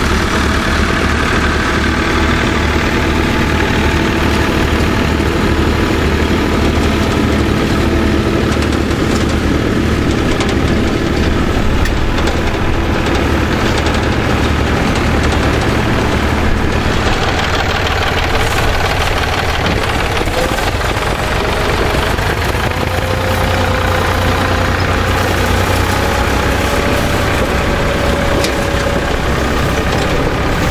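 Tractor engines running steadily under load: a small vintage tractor, chained in front, helps a larger tractor pull a potato harvester through the soil. The engine note changes about halfway through, and a faint, slowly rising whine follows.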